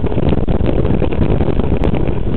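Mountain bike riding fast over a rough dirt trail, a loud continuous rumble of wind buffeting the bike-mounted camera's microphone mixed with the rattle and small knocks of the bike over the ground.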